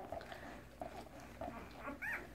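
Newborn Labrador retriever puppies, three days old, faintly squeaking a few short times.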